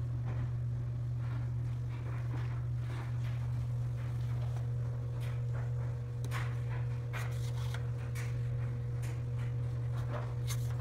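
A steady low hum, with a few faint light clicks as the plastic slider of a magnetic dishwasher clean/dirty indicator is pushed along its track.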